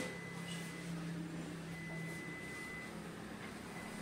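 Quiet room tone: a steady low hum with a faint, thin high-pitched whine.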